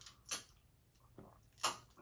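A man gulping soda from a plastic cup: two short swallows, one about a third of a second in and one near the end.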